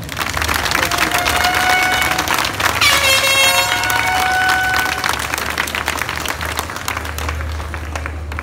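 Crowd applauding, with several long, steady horn blasts at different pitches sounding over the clapping, the strongest about three seconds in. The clapping eases somewhat in the second half.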